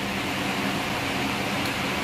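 Steady hiss with a faint low hum, like a fan or air conditioner running in a small room.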